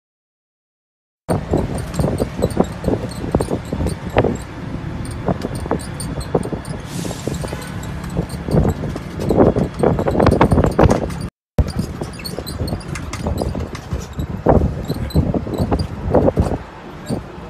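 Riding on the open top deck of a double-decker sightseeing bus: a steady low rumble of the bus and road with irregular gusts and knocks of wind on the phone's microphone. The sound starts after a second of silence and breaks off briefly about eleven seconds in.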